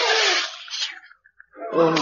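Shouting voices over a noisy rush fade out in the first second, a brief silence follows, and a man starts to speak near the end.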